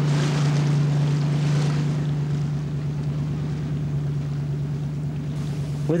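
A motorboat's engine running steadily under way, a low, even drone, heard from inside the boat's cabin, with a wash of water and wind noise over it.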